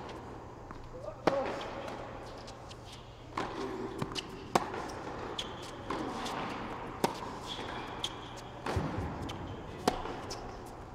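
Tennis rally on an indoor hard court: racket strikes and ball bounces come as sharp hits a second or more apart, the loudest about a second in, echoing in the hall. Short shoe squeaks fall between the hits.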